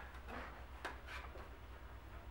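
Dry-erase marker writing on a glass whiteboard: a few short strokes and taps, over a low steady hum.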